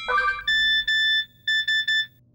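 The tail of a music cue rises briefly, then an electronic phone alert sounds as two pairs of steady high beeps and cuts off.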